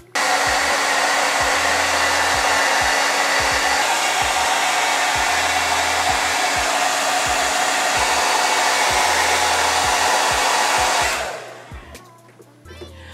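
Handheld hair dryer running steadily, a rush of air with a steady hum under it. It switches on right at the start and is turned off about eleven seconds in.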